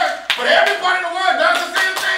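Hand claps from a congregation over a loud, drawn-out voice.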